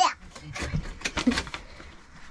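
Scattered light clicks and taps of metal teaspoons against small cups and dishes on a kitchen counter.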